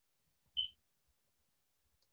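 Near silence, broken once about half a second in by a short, high beep.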